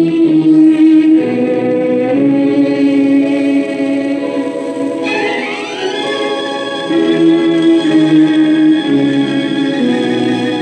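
A 1950s Hindi film song playing from a 78 rpm record: sustained chords that shift every second or so, with a glide rising in pitch about halfway through.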